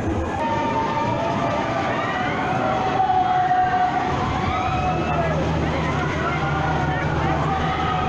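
Funfair noise at a swinging pendulum thrill ride: several overlapping wailing tones rise and fall over a busy background. A low steady drone joins about five seconds in.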